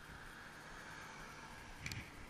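A car passing by faintly on the road, its tyre and road noise swelling slightly and fading. A single sharp knock just before the end.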